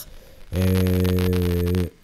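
A man's voice holding one low, flat-pitched hum for about a second and a half, starting about half a second in. It is a drawn-out, closed-mouth vocal filler between sentences.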